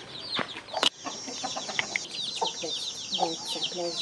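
A brood of chicks peeping rapidly and continuously in short, high, falling chirps, with a mother hen giving a few low clucks in the second half.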